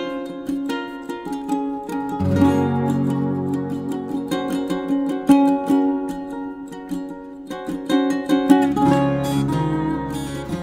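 Background music of quick plucked-string notes, with low bass notes that come in about two seconds in and again near the end.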